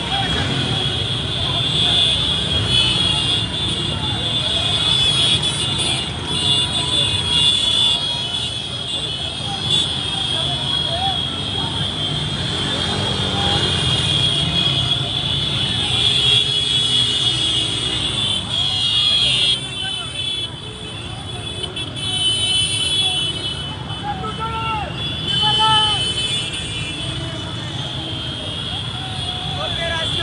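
Busy street crowd: many motorcycle and car engines running together, with horn toots and people's voices shouting over a steady rumble.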